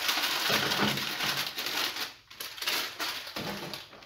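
Digestive biscuits tipped from their crinkly plastic packet into a clear plastic bag: a dense rustle and crinkle of plastic with the biscuits sliding in, breaking off briefly about two seconds in, then going on more quietly.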